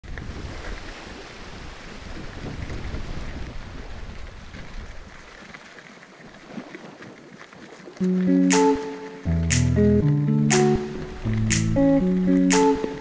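For about eight seconds, a steady rush of wind and mountain bike tyres rolling on gravel. Then background music cuts in, with plucked notes and a sharp beat about once a second.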